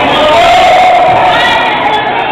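Spectators at a youth indoor football match shouting and cheering loudly, many voices at once, with long held shouts.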